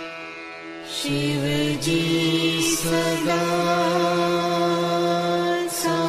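Devotional mantra chanting: a voice enters about a second in and chants over a steady sustained drone.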